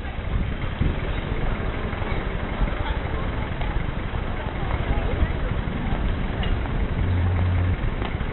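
City street ambience: passers-by talking indistinctly over the steady sound of traffic, with a brief low hum near the end.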